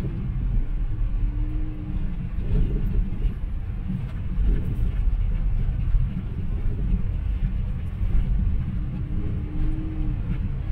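Low, steady rumble of a car driving in slow city traffic: engine and road noise, with a faint brief hum rising out of it twice.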